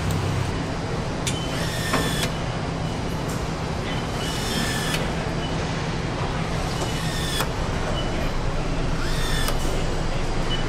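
A handheld power nutrunner driving fasteners into a car underbody, running in four short whirring bursts a couple of seconds apart, over steady assembly-line noise.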